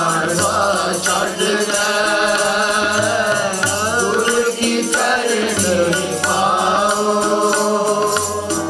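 Sikh kirtan: a shabad sung to two harmoniums, with tabla strokes keeping a steady rhythm.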